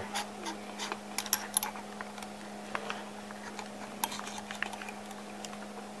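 Scattered light metallic clicks and ticks as a carpenter's brace chuck is turned by hand and a quarter-inch twist drill bit is worked into its jaws.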